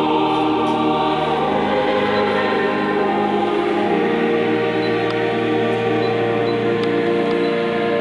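Choir singing slow, sustained chords, with a new strong note entering about halfway through.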